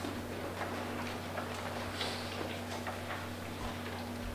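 Room tone of a meeting room: a steady electrical hum under faint, irregular small clicks and rustles from people moving about and shifting papers.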